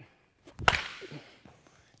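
A bat striking a softball held on a StrikeTEC swing trainer's flexible rod: one sharp crack about two-thirds of a second in, then a fading swish as the struck ball and rod whip away. The contact is a well-struck hit.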